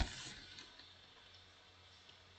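A short breathy burst of a man's silent, stifled laughter right at the start, fading within about half a second into near silence.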